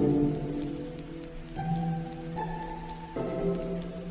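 Steady rain pattering under quiet lofi hip hop music. A louder chord fades at the start, then soft held notes change about every second.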